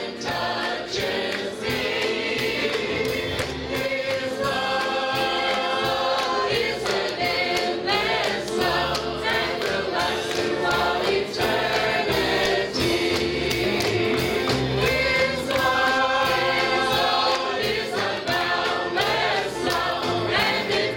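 Church choir of men and women singing a gospel song together, over a steady beat.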